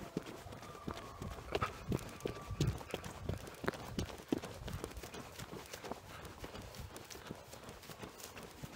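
Running footsteps on a grassy roadside shoulder, with uneven thuds and jostling from the hand-held camera, heaviest in the middle stretch.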